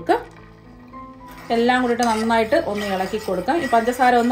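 Speech over soft background music. There is a pause in the talking for the first second or so, where only the music's held notes are heard, and then the speaking resumes.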